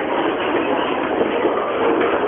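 Ōedo Line subway train running in the station, heard as a steady, even rumbling noise with no breaks.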